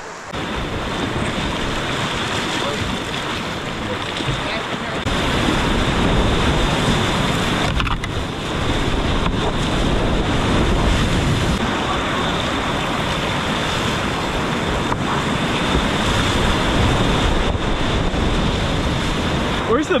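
Whitewater rapids rushing steadily, heard close up from a kayak in the current; the rush grows louder about five seconds in.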